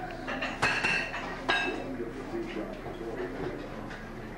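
Two sharp clinks of hard objects striking, each with a brief ringing, about a second apart in the first half, over background chatter.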